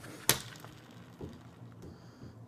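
A single sharp plastic click as the Bean Boozled game's arrow spinner is flicked, followed by a couple of faint taps.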